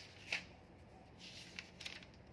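Faint rustling of paper being handled: a sharp brush about a third of a second in, then a longer rustle with a couple of small ticks in the second half.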